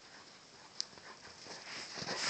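Faint sounds of a dog bounding through deep snow toward the microphone, growing louder toward the end, with one brief click a little under halfway in.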